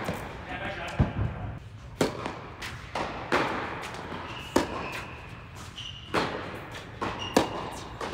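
Tennis rally on an indoor hard court: a series of sharp racket-on-ball hits about a second apart, each echoing in the hall, with brief sneaker squeaks on the court surface between shots.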